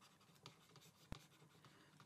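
Near silence with a few faint taps of a stylus writing on a tablet, the sharpest a little past halfway.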